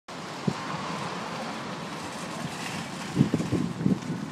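Steady wind and outdoor noise on a phone microphone, with a single thump about half a second in. From about three seconds in comes a run of soft, irregular low thumps: footsteps on asphalt and handling of the phone as it is carried along.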